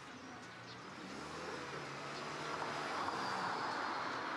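A passing vehicle's rushing rumble, growing steadily louder and reaching its loudest near the end.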